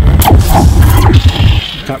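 Metal slinky spring dropped and bouncing on strings, giving its springy sci-fi sound effect: rapid clicks over a deep rumble, starting suddenly with the drop.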